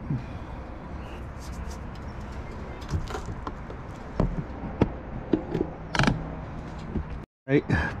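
Scattered clicks and scrapes of a hand screwdriver turning small screws into a flood light's metal mounting bracket, over a low steady rumble. The sound cuts off abruptly near the end.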